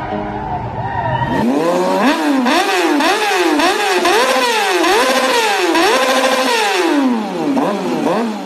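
Guitar music fades out about a second and a half in. Then a drift car's engine revs up and down over and over, about twice a second, sounding thin because its low end is missing.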